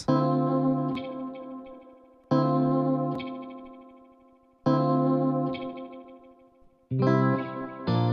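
Electric guitar chords, four in all, struck about every two and a quarter seconds, each ringing and fading with repeating echoes from the Pulsar Echorec, a tape-delay plugin modelled on the Binson Echorec. The playback-head (delays) setting is being switched, which changes the speed of the repeats.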